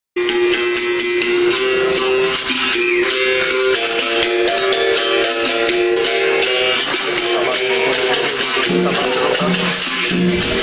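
Capoeira music: berimbaus playing a rhythmic toque, their notes stepping between two or three pitches, with the steady shaking of caxixi rattles. A lower berimbau note joins near the end.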